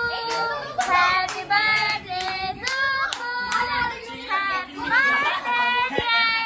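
Family voices, a child's among them, singing a birthday song in held notes while clapping in time, about two claps a second.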